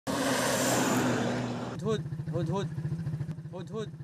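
A pickup truck driving on a dirt track: engine running under a loud rush of wind and tyre noise. About two seconds in the sound changes to the inside of a vehicle cab: the engine runs with a rapid, even low throb while a man speaks in short bursts.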